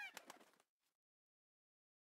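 The end of a peacock's call, dying away within the first second; near silence for the rest.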